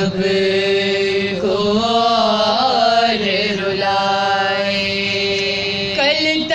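Women's voices chanting a noha, a Shia lament, drawing out long held notes that bend in pitch about two seconds in.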